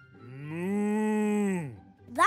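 A cow mooing once: one long call that rises in pitch, holds, then falls away, lasting about a second and a half.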